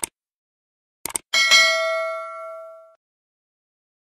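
Subscribe-button animation sound effect: a mouse click, a quick double click about a second in, then a bright notification-bell ding that rings and fades away over about a second and a half.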